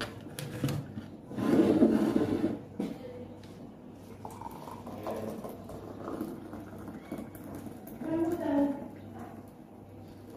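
Hot water poured from an electric kettle into a ceramic mug. A louder rush of noise lasting about a second and a half comes near the start.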